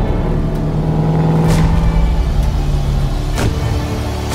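A car driving, its engine a low steady tone, layered with a dark trailer score and two short whooshing swells.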